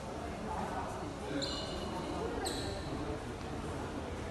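Indistinct voices murmuring in a large hall, with two short high-pitched squeaks, about a second and a half in and again near two and a half seconds.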